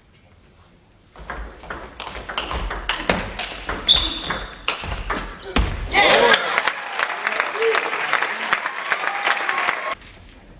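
Table tennis rally: a celluloid-type ball clicking off bats and bouncing on the table over and over, starting about a second in. From about six seconds in, spectators' voices rise loudly as the rally goes on.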